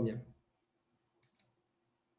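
The last words of a man's sentence trail off, then a few faint, quick clicks come about a second and a quarter in, over a low steady hum.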